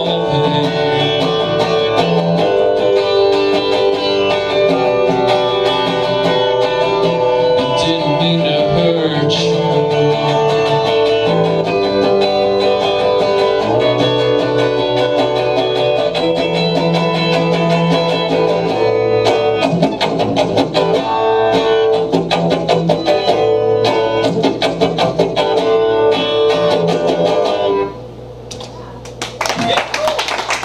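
Telecaster-style electric guitar played through an amp as the instrumental close of a song, letting chords ring until it stops about 28 seconds in. Audience clapping starts just before the end.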